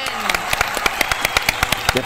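A few people clapping their hands in quick, irregular claps.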